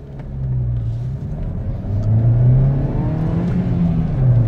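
Ford Ka+ 1.2 85 hp petrol engine, heard from inside the cabin, accelerating hard: the revs climb, dip briefly at a gear change a little over a second in, then climb again and dip at another shift near the end. The revs rise promptly with the throttle sharpened by a Pedal Sprint pedal controller set to sport mode.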